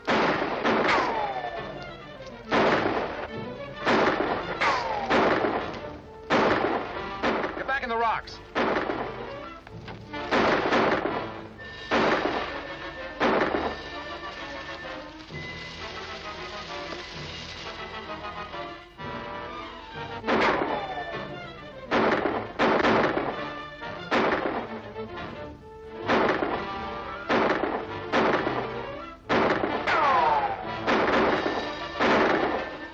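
Movie gunfight: around two dozen sharp shots in rapid exchanges, several followed by a falling whine, with a lull of about six seconds midway, over background music.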